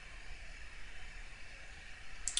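Steady low hiss with a faint low hum: quiet room tone and microphone noise, with no distinct events.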